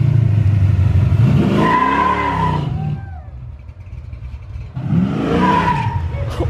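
Sports car engine revving hard through a valved aftermarket exhaust, its pitch sweeping up and down, dropping away about halfway and coming back loud near the end.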